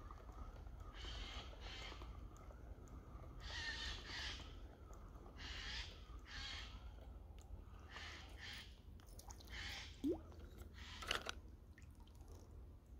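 Harsh bird calls, mostly in pairs, repeated about every two seconds over a faint steady background. A short rising sound and a sharp click come near the end.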